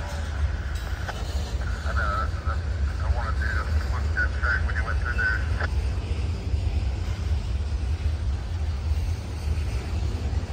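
Freight train's boxcars rolling past with a steady low rumble, with intermittent high squeals in the first half that stop about six seconds in.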